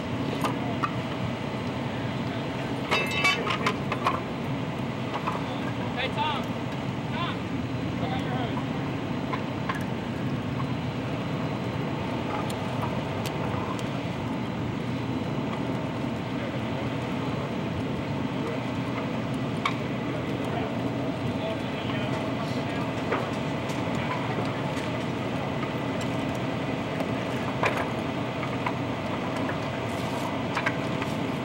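An engine running steadily at idle, with a few sharp clicks about three to four seconds in, and voices in the background.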